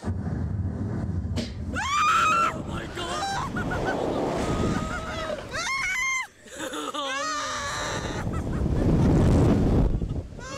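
Two riders screaming and shrieking as a slingshot ride launches them into the air, with several long rising screams, the loudest about two seconds in and again around six seconds. Wind rushes over the microphone the whole time.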